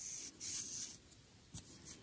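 Faint rustling of glittery yarn being drawn through knitted stitches with a sewing needle, in two short pulls in the first second, followed by a few light ticks.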